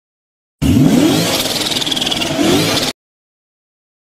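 A car engine revving, rising in pitch as it comes in and again near the end, starting and cutting off suddenly.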